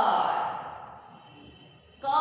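A woman's long, drawn-out vocal sound, falling in pitch and fading away over about a second and a half.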